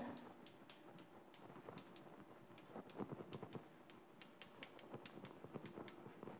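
Faint chalk writing on a blackboard: many short, irregular taps and scrapes as letters are written.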